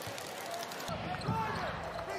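A basketball being dribbled on the court over arena crowd noise, which comes in about a second in.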